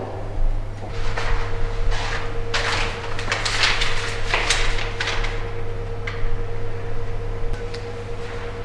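A sheet of paper being handled and unfolded, rustling and crinkling in a run of short bursts over a steady hum.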